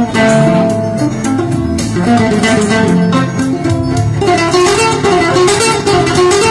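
Live band music led by quick plucked guitar runs, with sharp percussive strokes throughout.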